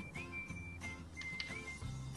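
Quiet background music carrying a high, thin melody line that slides between notes like whistling.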